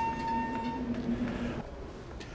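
A steady low hum with a higher whine over it. The whine cuts off just under a second in, and the hum stops about a second and a half in.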